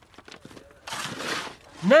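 Digging in a trench of soil and stones: a few faint knocks, then a short scraping rush of loose earth about halfway through.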